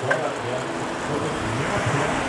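A car running in the street close by: a steady rush of engine and tyre noise.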